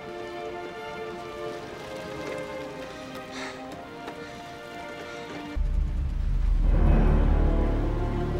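Orchestral film score holding sustained, tense chords; about five and a half seconds in, a deep rumble cuts in suddenly and swells beneath the music.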